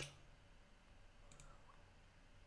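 Near silence, with faint computer-mouse clicks a little over a second in.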